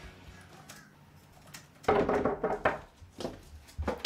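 Knocking on a wooden door: a quick run of loud knocks about two seconds in, then a few more knocks near the end, in a small quiet room.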